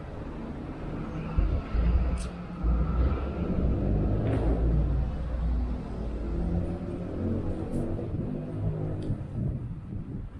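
A low rumble of a motor vehicle's engine running close by, heaviest in the first half and easing off after about six seconds.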